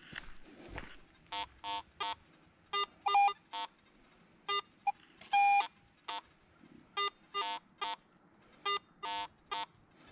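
Garrett AT Pro metal detector beeping as its coil sweeps over a nickel lying close to another target: a string of short tone-ID beeps in an irregular rhythm, some lower-pitched and some higher, with one longer tone about five and a half seconds in.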